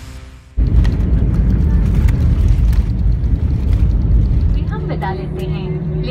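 Airbus A320-family airliner on its landing roll, heard from inside the cabin. A loud low rumble of wheels on the runway and the engines starts suddenly about half a second in. It eases slightly near the end, when a steady hum and a voice come in.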